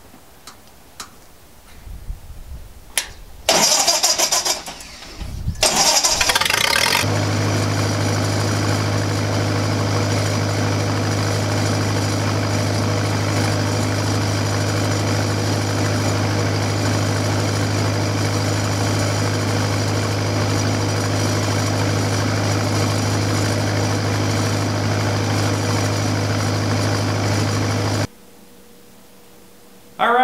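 Lincoln SA-200 Pipeliner engine-driven welder being started: a few loud rough bursts, then from about seven seconds in the engine and generator run at a steady, unchanging speed. The sound cuts off suddenly at the end.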